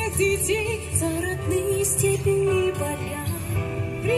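A woman singing a melody into a microphone with vibrato, over a recorded pop backing track with bass and cymbals played through PA speakers.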